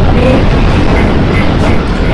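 Stampede sound effect: the hooves of many running animals in a loud, steady rumble.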